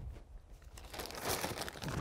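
Plastic bag of potting soil crinkling and rustling as it is picked up and handled, busier in the second half.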